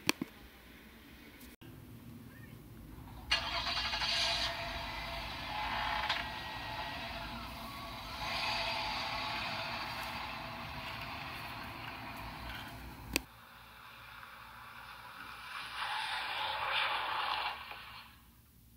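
Car driving sound as a police car travels, a steady rushing noise in two stretches. The first lasts about ten seconds and stops suddenly with a click. The second is shorter, near the end.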